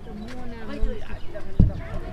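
Indistinct voices of people talking in the background, with a single low thump about one and a half seconds in.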